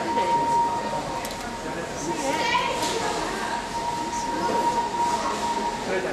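Chatter of a crowd of onlookers on a railway platform, several voices at once, with a single steady high tone held under it that stops shortly before the end.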